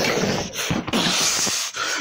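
A child's breathy, hissing mouth noises with gasps, fading for a moment about one and a half seconds in.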